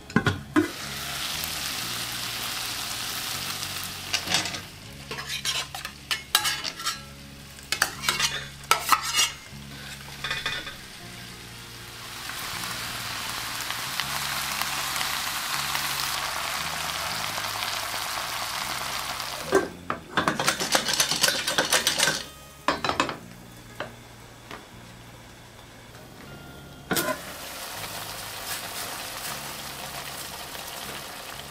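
Mushrooms and seafood sizzling in a hot stainless steel pan. The frying hiss is interrupted twice by bursts of clattering and clinking as ingredients are added and moved with a utensil against the pan. A single metal clink comes near the end as the lid goes on.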